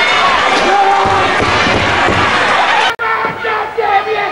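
Wrestling crowd shouting and cheering, many voices at once. About three seconds in there is an abrupt cut to a quieter crowd with a few voices calling out.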